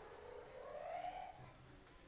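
Distant firecrackers: a faint whistle rising slightly in pitch for about a second, like a whistling rocket, then a few faint snaps.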